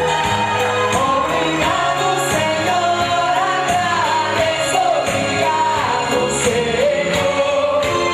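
Live music: a male lead singer with the cast singing along in chorus over a band, with a steady beat of about two strokes a second.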